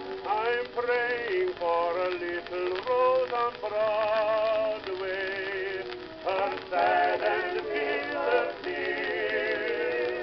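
Music from a 1920 acoustic-horn shellac 78 rpm record of a male vocal quartet ballad. Several melody lines sound together, each with a wide vibrato.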